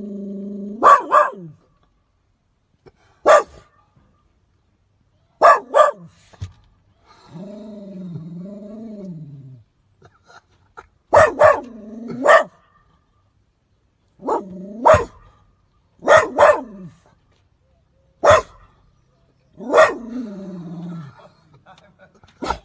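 Cock pheasant calling: a string of sharp, harsh crows, mostly in close pairs, repeated every few seconds. Drawn-out, low voice sounds from a man fall between them.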